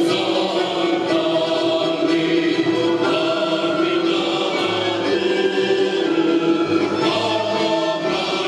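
Folk choir of men's and women's voices singing a Ukrainian folk song in held, sustained phrases, with a low bass line underneath.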